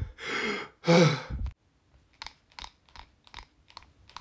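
Two heavy, gasping breaths, then an asthma inhaler being shaken: a run of short rattling clicks, about three a second.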